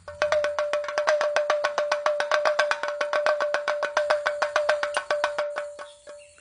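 An edited-in sound effect: a steady single tone with rapid, evenly spaced ticking over it, like a countdown or suspense cue. It starts suddenly and fades out just before the end.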